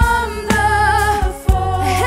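A woman singing a hymn melody in long held notes with a slight vibrato, over instrumental band accompaniment with a steady low bass and a couple of sharp drum hits.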